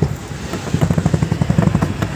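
A vehicle engine running with a rapid, even low throb.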